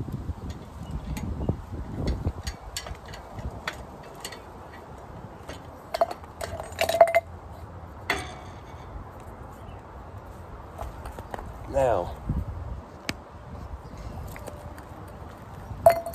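Metal clicks and rattles as steel C-clamps are unscrewed from an iron railing and set down on concrete, with a couple of ringing metallic clinks about six and seven seconds in. Near the end the sawn-open aluminium oil cooler is put down on the concrete with another clink.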